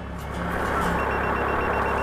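A police breath-alcohol screening device sounding its alarm, a rapid high-pitched beeping that starts about a second in, the signal that alcohol has been detected on the driver's breath. Under it runs a steady hiss.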